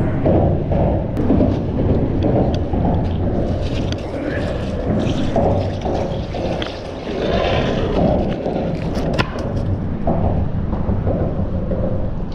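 Heavy low rumble of wind buffeting the microphone, with knocks and scraping as a heavy barnacle-crusted metal bar on a magnet-fishing rope is hauled up and dragged over a concrete seawall.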